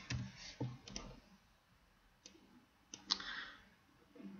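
A few faint, separate clicks of a computer mouse as cells are copied in a spreadsheet.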